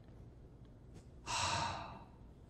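A man's single audible breath close to the microphone, a short hiss lasting about half a second, starting a little past halfway and fading out, over faint room tone.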